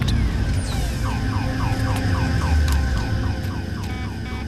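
Dramatized impact sound effects: a deep, heavy rumble under a fast electronic warble of short falling chirps, about four a second, that starts about a second in and keeps going. It stands for the comet impact's pulse reaching the observatory.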